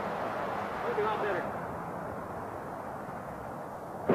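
Steady noise of distant highway traffic, with a man's voice briefly about a second in.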